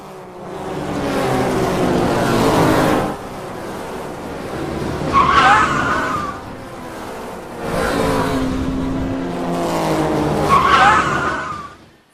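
Race-car sound effect: engines running and passing in repeated swells, with a tyre squeal twice, once about halfway through and again near the end.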